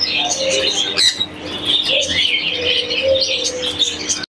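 Many caged pet birds chirping and chattering at once, a dense overlapping twitter.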